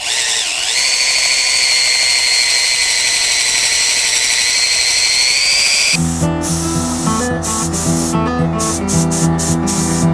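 Cordless drill with a paint-stirrer attachment spinning in a tin of paint, a steady high whine that rises slightly before it stops suddenly about six seconds in. Acoustic guitar music then plays to the end.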